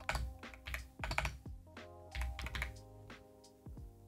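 Keystrokes on a computer keyboard, typing a short phrase in a few quick irregular runs of clicks. Soft background music with sustained tones plays underneath.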